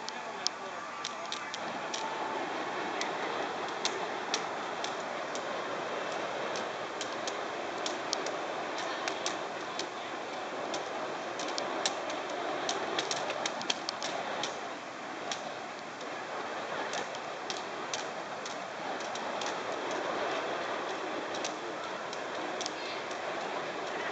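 Two burning fire sticks being spun: a steady rushing of flame with many scattered sharp crackles.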